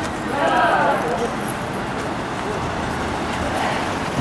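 Voices of a group of people talking as they walk along a city street, over steady street noise. One voice rises briefly about half a second in.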